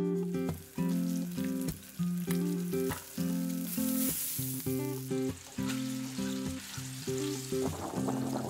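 Webfoot octopus in red chili sauce and vegetables sizzling as they stir-fry in a pan. The sizzle swells about four seconds in as the sauced octopus is tipped in. Light background music plays alongside.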